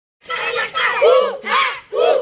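A group of children shouting together in short rhythmic bursts, about two a second, like a chant.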